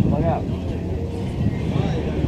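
Steady low rumble of outdoor background noise with faint voices in it; no single source stands out.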